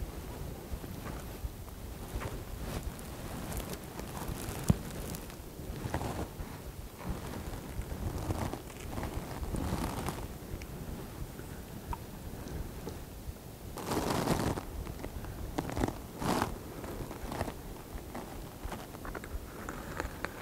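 Clothing rustling and handling noises as a crossbow is picked up and shouldered in a tree stand, with a sharp click about five seconds in and a louder burst of noise around fourteen seconds.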